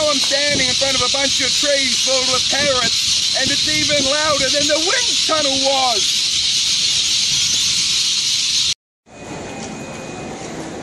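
A woman making wordless sliding squeals and calls for about the first six seconds, over a loud, steady, high hiss. The sound cuts out shortly before the end and gives way to quieter indoor hubbub.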